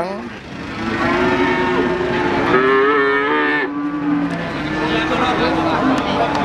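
Cattle mooing: one long, drawn-out moo beginning about a second in and lasting about three seconds, followed by further lowing near the end.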